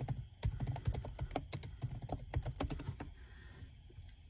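Typing on a computer keyboard: a quick run of keystrokes starting about half a second in and stopping after about three seconds.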